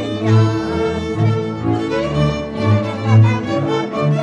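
Slovak folk string band playing a čardáš: a fiddle melody over a double bass line.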